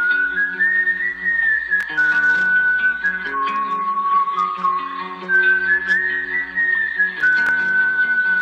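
Instrumental radio bumper music: a whistled melody that slides between held notes over plucked acoustic guitar.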